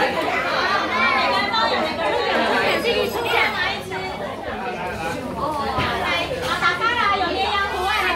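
Many overlapping voices of children and adults chattering at once, with no single speaker standing out.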